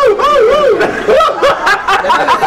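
High-pitched laughter in a quick run of 'ha-ha' pulses, about five a second, that breaks off about a second in and gives way to lighter, scattered laughter.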